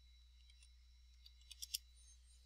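Faint, quick clicks of computer keys, about four keystrokes in close succession about a second and a half in, over near silence and a low hum.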